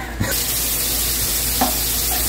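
Shrimp sizzling as they fry in a pan on a gas stove. The frying hiss starts suddenly just after the start and then holds steady.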